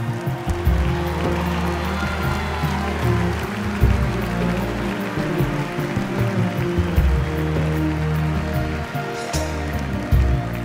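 Live band playing an instrumental passage of a rock song: drums and electric guitar with a violin line over sustained low notes.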